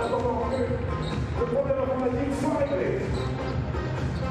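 A basketball being dribbled on a hardwood court amid the steady noise of an arena crowd, with a voice carrying in the background for the first three seconds or so.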